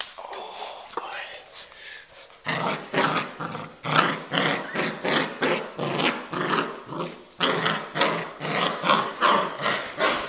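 A six-week-old puppy growling in a long run of short bursts, about two a second, that start about two and a half seconds in.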